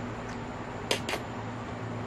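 A toddler slurping up a strand of spaghetti and chewing, with two short wet mouth smacks about a second in, over a steady low hum.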